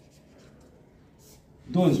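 Faint strokes of a marker pen writing a word. Near the end a man starts speaking.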